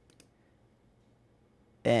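A few faint computer clicks just after the start, as a value is entered in a software settings field, then near silence.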